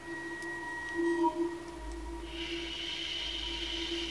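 Eerie horror-film score drone: held low tones that swell slightly about a second in. About halfway through, a deep rumble and a hissing, high-pitched layer join in.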